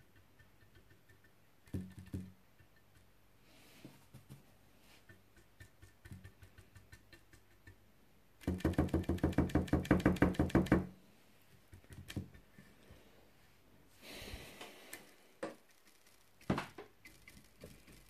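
Paintbrush being stippled, dabbing dry paint: a rapid run of knocks, about a dozen a second, lasting about two seconds midway, among a few scattered light taps, with a short brushing rasp later.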